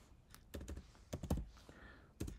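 Computer keyboard keys being pressed: about half a dozen separate keystrokes, the strongest a little past halfway, as a value of 90 is typed into an input field.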